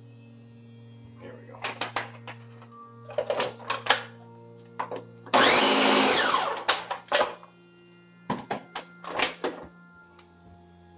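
Ninja countertop blender running briefly, about a second and a half, its motor spinning up and back down as it mixes a thick frozen-strawberry protein ice cream blend. Clicks and knocks of the oil bottle and blender jar being handled come before and after.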